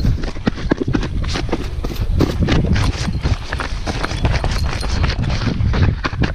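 Rapid, irregular slaps of hands on work trousers, mixed with fabric rubbing close against a body-worn camera: the wearer is frantically swatting ants off his legs after kneeling in an ant bed.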